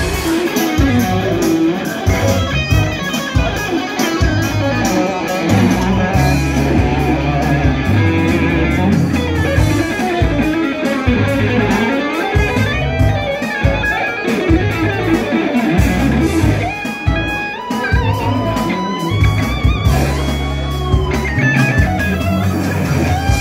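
Electric guitar played through an amplifier: fast melodic lead lines with string bends toward the end, over a bass line that steps from note to note.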